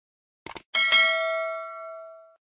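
A quick double click, then a bell chime struck about three quarters of a second in that rings on and fades away over about a second and a half: the click-and-bell sound effects of a YouTube subscribe-button animation.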